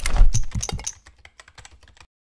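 Logo-animation sound effect: a fast run of sharp clicks like keyboard typing, loudest with a low thump about a quarter second in, then thinning out to a few faint clicks after about a second.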